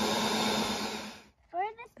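Corded electric mini tiller (garden cultivator) running steadily with its tines churning soil, a steady motor hum and whine that fades out about a second in.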